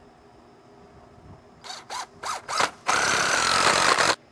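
Cordless drill running against the concrete sill while fastening with Tapcon masonry screws: a few short bursts about halfway in, then a steady run of about a second near the end that stops abruptly.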